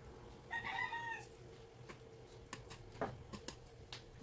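A faint, short animal call about half a second in, lasting under a second, followed by a few faint clicks.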